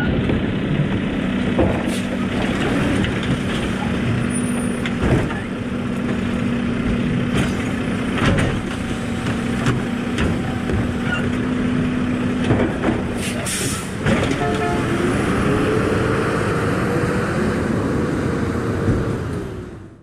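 Automated side-loader garbage truck running its engine at a steady speed while the hydraulic arm lifts and dumps a plastic polybin, with occasional knocks of the bin and arm. About two-thirds of the way in there is a short hiss of the air brakes releasing, then the engine pitch rises as the truck pulls away, fading out near the end.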